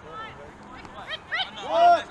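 Shouting voices during a game: scattered calls, then a loud shouted call near the end.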